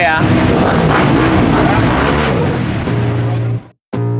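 Racing motorcycle engines running and revving, mixed with voices. About three seconds in, a steady low musical note takes over, and it cuts off just before the end.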